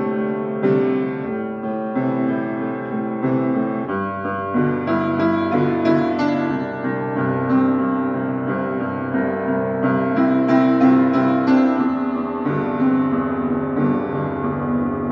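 Acoustic piano playing a slow progression of sustained chords, the harmony moving to a new chord about every two seconds.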